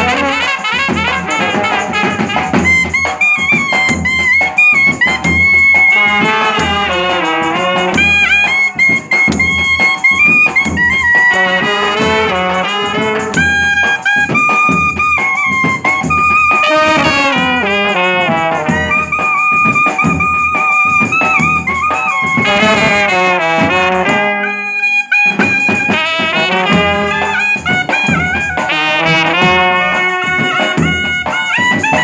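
A small brass band playing: trumpets and a clarinet carry a melody over a bass drum and side drums beating a steady rhythm. The band drops out briefly about three-quarters of the way through.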